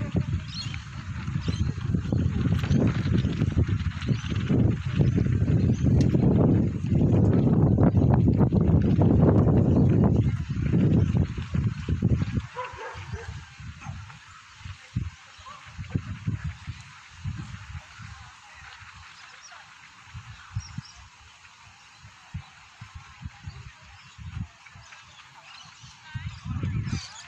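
Wind buffeting the phone microphone: a loud low rumble for about the first twelve seconds, then weaker gusts, with voices and a dog barking in the background.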